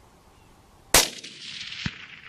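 A single hunting-rifle shot just under a second in, its report rolling on and fading for about a second. A second, shorter sharp crack follows about a second after the shot.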